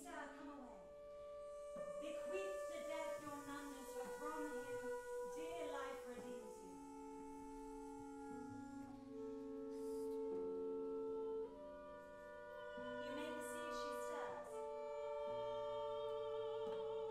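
Live contemporary chamber music for soprano, clarinet, harp and double bass: long held notes overlap in several parts, with a singing voice wavering through them.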